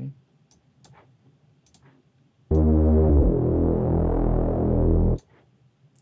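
A few faint mouse clicks, then a held low synth bass note from the Vital software synthesizer's 'BA-Dark' bass preset, auditioned as a candidate Reese bass. The note comes in sharply about two and a half seconds in and cuts off after under three seconds.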